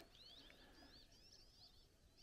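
Near silence with faint birdsong: a small songbird's run of quick, high chirping notes that stops shortly before the end.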